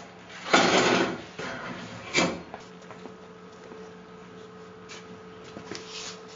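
A chair scraping and shifting as someone gets up abruptly, a noisy scuffle about half a second in, then a single sharp knock about two seconds in. A faint steady hum follows.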